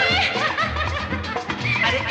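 Hindi film song playing: a male voice sings a rising glide, then a run of quick up-and-down laughing, yodel-like vocal sounds over the orchestra.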